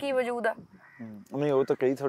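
Only speech: a woman talking, a short pause about half a second in, then a man talking.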